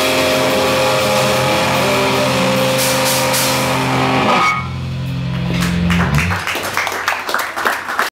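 Live rock band with guitars, bass and drum kit playing the end of a song; a little past halfway the full band drops out, leaving a low held note ringing until about six seconds in, followed by a scatter of irregular sharp hits.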